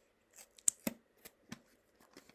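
Hands handling small objects at a desk: a quick string of about five or six sharp clicks and light rustles, with short gaps between them.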